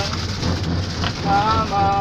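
Steady rushing noise inside a moving cable-car gondola riding its cable, with a low hum under it. A person's voice rises briefly in the second half.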